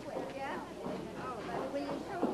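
Many children's voices chattering and murmuring indistinctly at once, a classroom that has not yet quieted down.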